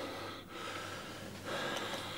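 A faint breath, slightly louder about one and a half seconds in, over low room hiss.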